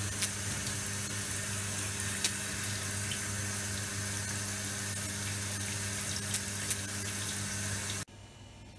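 Shower spray running steadily onto a leg and the enamel of a bathtub, a constant hiss of water with a steady low hum underneath. The water cuts off abruptly at the end.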